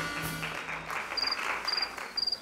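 A music sting's held notes die away in the first second, then a cricket-chirp sound effect starts about a second in: short high trills, about two a second. It is the comic cue for an awkward silence from the audience.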